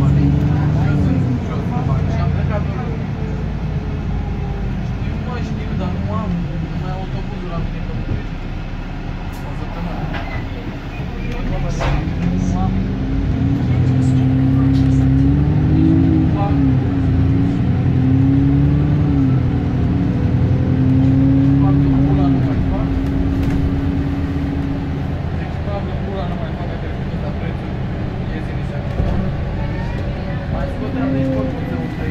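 Cabin sound of a Dennis E40D double-decker bus's six-cylinder diesel engine under way, its note rising and dropping several times as it accelerates and changes gear, most plainly in the middle of the stretch, over steady road and body noise.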